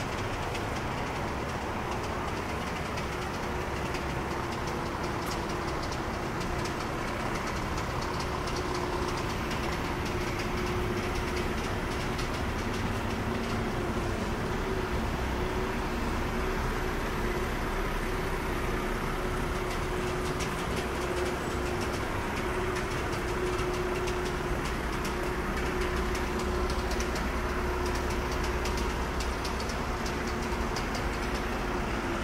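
Steady city street ambience: a continuous rumble of distant traffic with a steady droning hum under it, and faint footsteps of someone walking on paving.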